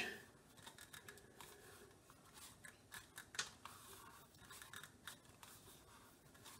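Faint scraping and rubbing, with scattered soft clicks, from two-strand copper wire being wound by hand onto a 3D-printed plastic spool and pressed against its flange.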